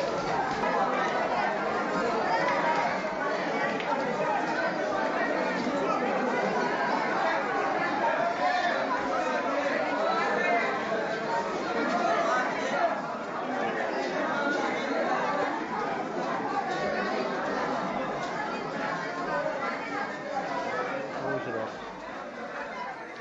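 Crowd of many people talking over one another in a continuous dense babble of voices.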